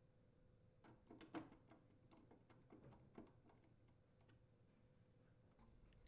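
Mostly near silence, with a run of faint, irregular clicks in the first half from a quarter-inch socket driver tightening the ice maker's mounting screws.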